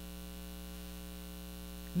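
Steady electrical mains hum: a low, even drone with several fainter steady tones stacked above it.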